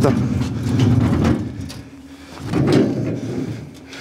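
Indistinct voices talking, with a few light knocks.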